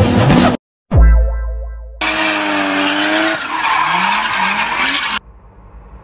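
Car sound effects in an edited transition: engine revving and tyres screeching, cut by a deep, falling bass boom about a second in. After about five seconds it drops to a quieter, rising whoosh.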